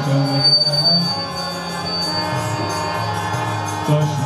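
Devotional kirtan: a group of men chanting with violin accompaniment. The voices break off about a second in while the instruments hold steady tones, and the singing comes back in at the very end.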